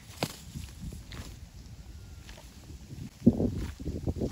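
Komodo dragon shaking and tearing at a goat carcass in dry grass: scuffing and rustling, a sharp knock just after the start and a louder thud a little after three seconds.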